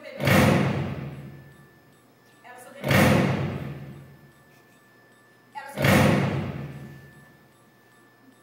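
Three heavy booming thuds, evenly spaced about three seconds apart, each ringing out and dying away over about a second and a half, each preceded by a brief fainter sound.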